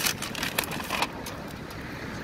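A white paper bag being handled and opened, giving a few short, sharp crackles in the first second, over a steady low outdoor rumble.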